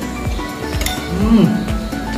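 Metal spoons clinking against ceramic bowls and plates while people eat, a few light clinks over steady background music, with a short voiced rise-and-fall sound about halfway through.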